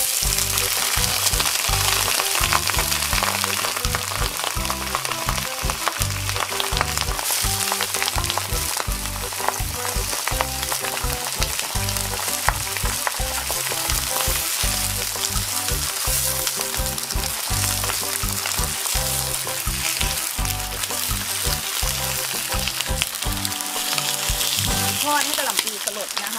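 Cabbage leaves sizzling in hot oil in a nonstick wok, the sizzle starting sharply as they hit the oil. The leaves are stirred with a wooden spatula while they fry.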